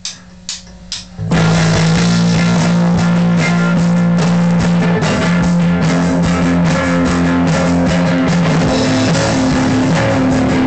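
A rock band practising: a few sharp clicks keep time, then guitar and drum kit come in together about a second in and play loudly with sustained low notes.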